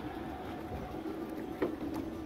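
Log flume ride running: a steady low rumble with a faint steady hum, and a single sharp click about one and a half seconds in.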